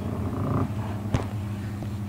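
A steady low hum with a single sharp click about a second in.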